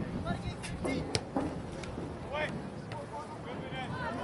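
Faint, distant shouts of players and spectators across an open soccer field, over a low steady background, with a single sharp knock about a second in.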